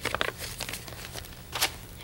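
A sheet of flash paper crinkling and rustling as it is handled: a few short crackles, the sharpest about one and a half seconds in.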